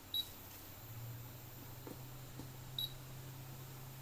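Hot air rework station beeping twice, two short high beeps about two and a half seconds apart, over a low steady hum that rises slightly in pitch about a second in, as the station is set up to reflow a MOSFET on the graphics card.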